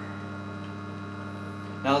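Vibratory feeder bowl running: a steady electromagnetic hum from its drive as it shakes silicone O-rings up the track. A word of speech comes in right at the end.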